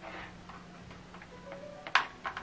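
A single sharp click near the end over a faint steady hum, as a USB cable is handled.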